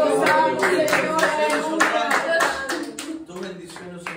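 Hands clapping in a steady run while a voice sings and chants over them; the voice falls away after about two and a half seconds, leaving mostly the claps.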